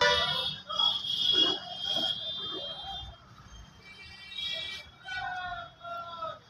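A voice amplified through a public-address loudspeaker, with a high, steady tone over it in the first couple of seconds.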